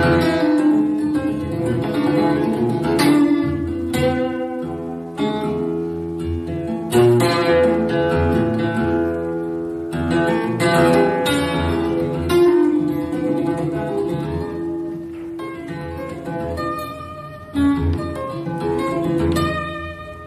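Solo acoustic guitar played live, chords and single notes struck sharply at irregular intervals and left to ring.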